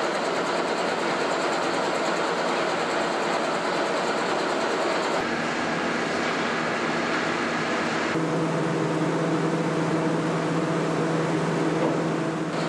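Fish-paste forming machine running steadily: a continuous mechanical hum and whirr, with a low hum growing stronger about eight seconds in.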